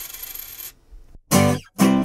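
A coin-drop sound effect: the coin's ringing and rattle fading out as it settles in the first part, then two short guitar chords struck near the end as an outro sting.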